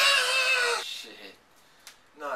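A loud, high-pitched, strained yell that falls slightly in pitch and fades out after about a second.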